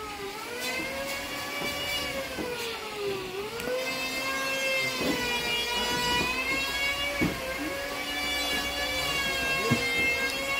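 A steady, whining machine-like hum with a clear pitch. It dips briefly about three seconds in and then holds level.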